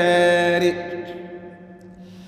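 A man's voice chanting Arabic devotional verse, holding the last note of a line for under a second, then fading away into a pause between lines. A faint steady low hum runs underneath.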